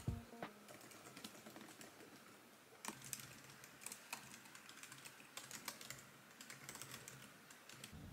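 Faint, irregular clicks of fingers typing on a laptop's built-in keyboard, low-travel keys in quick bursts of keystrokes.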